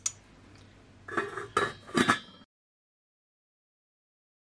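Stainless steel cooking pot and its lid clinking: a few sharp metal clinks with a short ring. The sound then cuts off to dead silence about two and a half seconds in.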